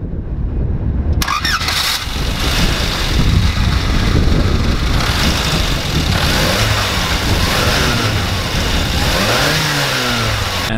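A 1997 Škoda Felicia pickup's 1.3-litre four-cylinder petrol engine turns over and catches about a second in. It then runs steadily, with small rises and falls in pitch.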